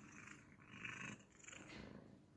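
Domestic cat purring faintly while it is being petted.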